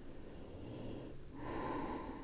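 A soft breath, then about one and a half seconds in a louder, hissy breath.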